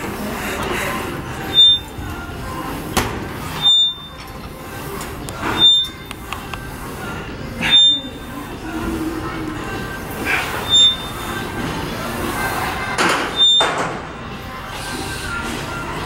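Plate-loaded overhead shoulder press machine worked through a set of reps, giving a short squeak and knock at each rep, about every two seconds, over background music.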